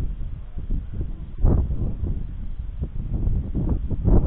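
Wind buffeting the microphone in uneven gusts, a low rumble with a stronger gust about a second and a half in.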